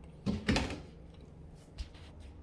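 Bathroom vanity cabinet door being handled: two short knocks about half a second in, and a small click near the end.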